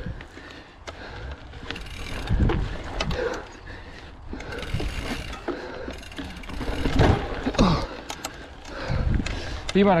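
Mountain bike ridden over a bumpy dirt trail: tyres on dirt, the bike rattling over roots and bumps, and the rear freehub ratcheting while coasting, with wind rumbling on the microphone.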